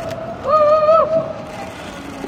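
A woman's voice holding one high, steady vocal note for about half a second, sliding up into it and dropping off at the end.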